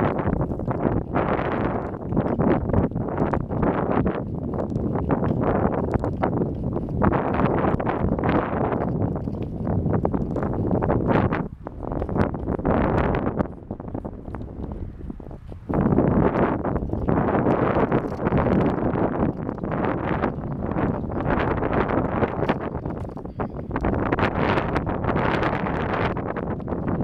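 Wind buffeting the microphone of a camera filmed from a moving car, a loud gusting rumble. It eases for a couple of seconds about halfway through, as the car slows at a stop sign.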